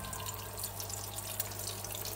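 Egg-coated chicken shami kababs shallow-frying in hot oil over a high flame: a steady crackling sizzle, with a low hum underneath.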